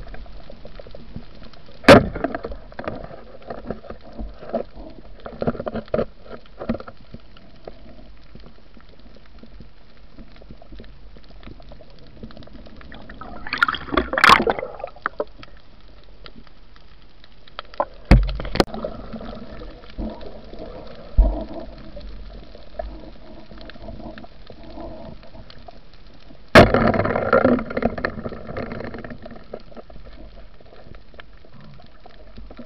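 Muffled underwater sound heard through a camera housing during night spearfishing: gurgling and bubbling water broken by several sharp knocks and clatters of spear and gear, with a burst of commotion in the middle and a loud knock followed by a short rush of noise near the end.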